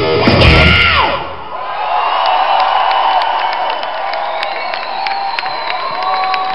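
A rock band with electric guitar ends a song on a loud final hit that cuts off about a second in, with a falling pitch as it stops. The crowd then cheers, with scattered sharp claps.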